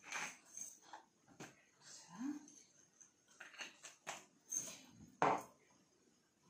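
A handheld salt mill grinding Himalayan salt, giving a series of short, irregular clicks as it is twisted. A louder knock comes near the end.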